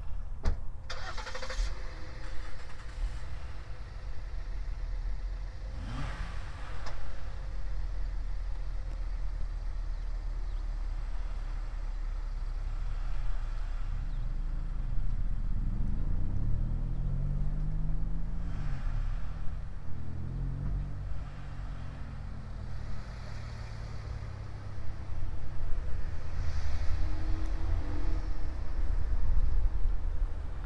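A car engine running, its pitch rising and falling through the middle of the clip as the vehicle moves, over a steady low rumble. There is a sharp knock just after the start and another about six seconds in.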